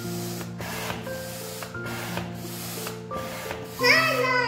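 Hand air pump being worked in quick strokes, each push giving a short rush of air, about two a second, as it inflates a plastic inflatable.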